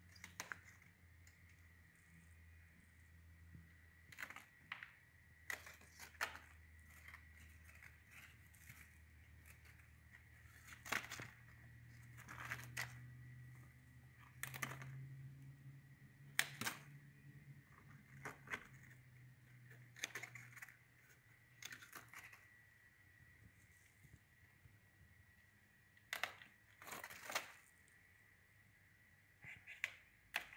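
Bypass pruning shears snipping chili pepper stems: a dozen or more short, sharp clicks and snips at irregular intervals, over a faint steady high whine.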